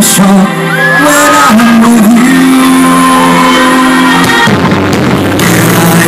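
Loud live concert sound: a male singer singing into a microphone over amplified backing music, heard through the PA.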